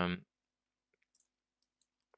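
Two or three faint computer mouse clicks, a pair about a second in and one near the end, after the tail of a spoken 'um'.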